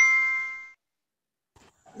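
An electronic notification ding of several bright tones. It rings and fades out within the first second.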